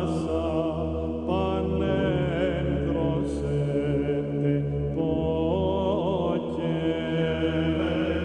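Chanting voices in long held notes with wavering pitch, over a steady low drone.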